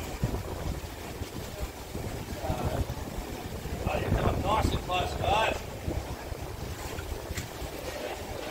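Wind buffeting the microphone in gusts. Indistinct voices of people nearby come in about two and a half seconds in, and again from about four to five and a half seconds.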